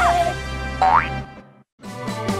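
Edited background music with cartoon sound effects: a bouncy tune trails off, a quick rising whistle-like glide sounds about a second in, the music breaks off briefly, and a new plucked-string tune starts near the end.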